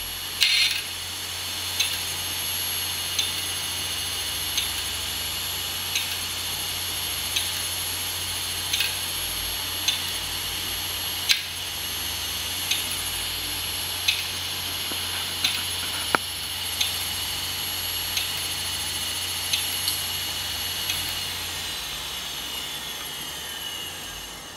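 Opened computer hard drive spinning its aluminium platter: a steady high whine over a low hum, with sharp clicks about every second and a half. About 21 seconds in, the whine starts to fall in pitch as the drive spins down.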